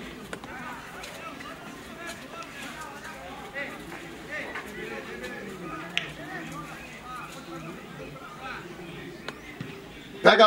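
Distant, overlapping voices of footballers and onlookers calling out across a grass pitch, with one short sharp knock about six seconds in.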